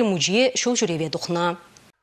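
Speech only: a woman speaking in Chuvash, which fades out about a second and a half in and cuts to dead silence near the end.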